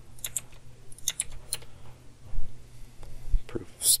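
Computer keyboard keystrokes and mouse clicks, a scatter of short sharp clicks, some in quick pairs, with a couple of dull low knocks in the second half.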